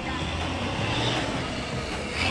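Heavy diesel engine of construction machinery running steadily, a low hum with no change in revs.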